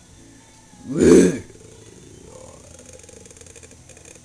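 A tiger roaring once, loud and short, about a second in, with fainter low sounds after it.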